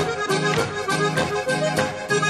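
Alpine folk band playing a Boarischer dance tune, an accordion leading over a bouncing bass-and-chord beat of about four strokes a second.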